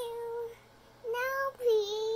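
A young child singing in three held notes at a steady, fairly high pitch, with short breaks between them.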